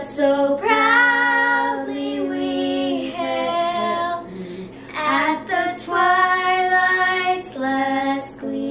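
A young girl singing a tune unaccompanied in long held notes, with a woman's voice singing along.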